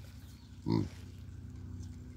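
A hamadryas baboon gives one short, low grunt about three quarters of a second in, over a steady low hum.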